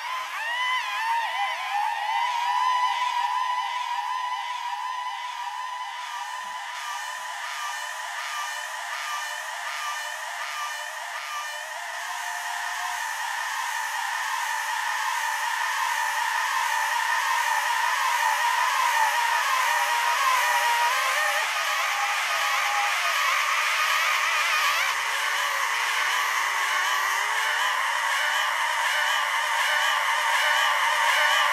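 Experimental electronic music: a dense mass of many overlapping, warbling high tones with the bass cut away entirely, swelling slowly louder through the second half.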